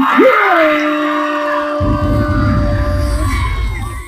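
End of a dance-showcase music track: one long held vocal note over crowd cheering and yelling. A low rumble comes in suddenly about two seconds in, and the sound fades out at the end.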